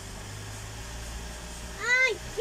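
A young child gives one short, high-pitched squeal that rises and falls, near the end, over a steady low hum.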